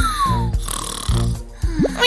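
Cartoon background music with a low, stepping bass line, and a cartoon snoring effect: a whistle falling in pitch over the first half-second, then a quick rising sweep just before the end.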